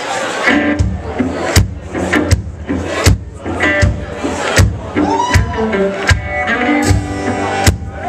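A live acoustic band starting a song: a drum struck steadily, about once every three-quarters of a second, under strummed acoustic guitar.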